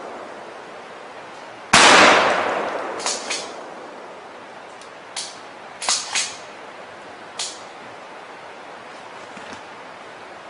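A single gunshot from a long gun about two seconds in, its report dying away over the next couple of seconds. Several fainter sharp snaps follow at uneven gaps.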